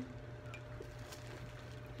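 Quiet room tone: a steady low hum with a few faint light ticks.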